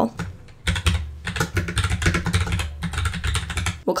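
Typing on a computer keyboard: a quick run of keystrokes starting a little under a second in and lasting about three seconds.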